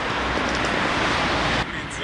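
Steady wind rush on the microphone of a camera moving along with a rider on a bicycle, cutting off suddenly near the end.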